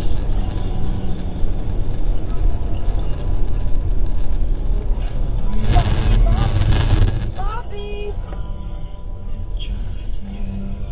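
Steady low rumble of a car driving, heard from inside the cabin through a dash cam. It grows louder and brighter around six seconds in, with a few short rising tones, and background music comes in near the end.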